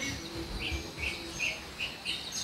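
Small birds chirping in the background: a handful of short, separate high chirps over a faint room hum.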